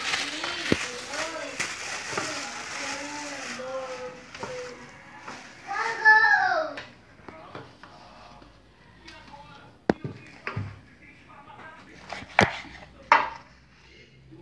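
Plastic bag crinkling as a frozen cow's foot is unwrapped, with voices over it and one loud voice about six seconds in, then a few sharp knocks of a knife cutting through the foot onto a wooden cutting board near the end.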